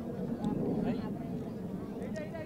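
Steady low jet-engine rumble from the Surya Kiran team's formation of BAE Hawk Mk132 jets flying over, with people's voices talking faintly underneath.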